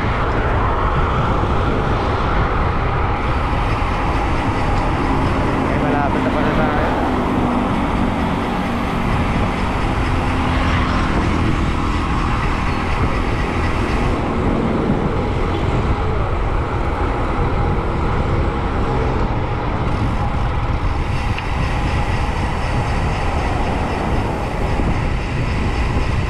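Steady wind rush on a bike-mounted camera's microphone, with tyre and road noise, while riding a road bike at speed.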